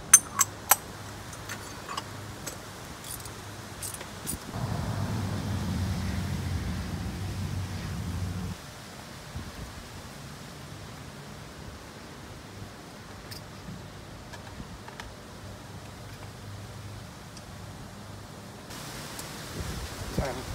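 Hand tools clinking against the metal oil filter housing on a diesel engine, a few sharp clicks about a second in. A low rumble runs for about four seconds in the middle, over a steady background hiss.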